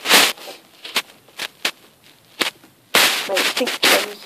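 Close rustling and scraping in wood-shavings bedding, near the microphone. A louder burst comes at the start and another about three seconds in, with a few sharp clicks between them.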